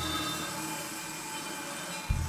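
Prepared drum kit sounding a steady, grainy noise texture with a few faint ringing tones, with no drum strikes.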